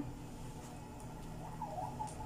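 Quiet room tone: a steady low hum with a few faint light clicks.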